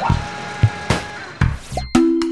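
A rushing, hissing sound effect with several sharp knocks, as a plastic letter block tumbles in the ladder of a toy fire engine, over a children's jingle; a short rising beep comes near the end.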